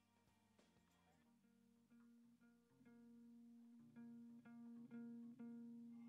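Faint background music with plucked guitar, starting almost silent and growing louder over the second half.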